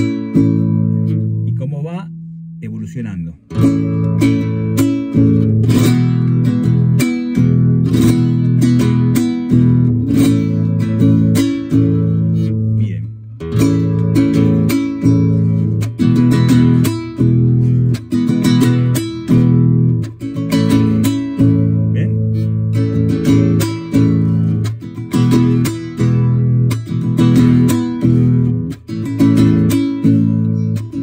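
Nylon-string classical guitar strummed in the basic zamba rhythm: a downward strike (golpe) on the strings followed by thumb strokes, in a steady repeating pattern. The playing breaks off briefly about two seconds in and then resumes.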